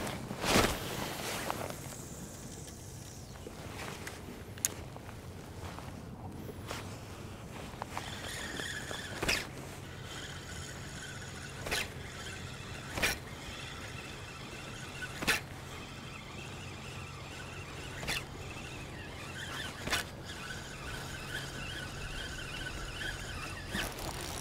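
A spinning reel being cranked to retrieve a lure, giving a faint gear whirr. Scattered sharp taps sound every couple of seconds.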